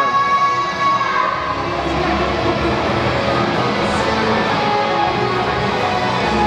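Live rock band music: a long held note ends about a second in, then the band plays on.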